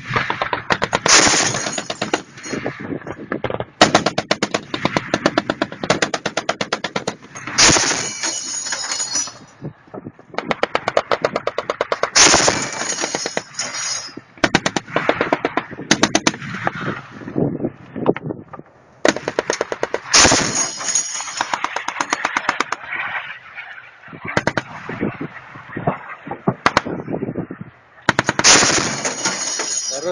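ZU-23-2 twin 23 mm anti-aircraft autocannon firing repeated bursts of rapid shots, each burst a second or a few long, with short pauses between them.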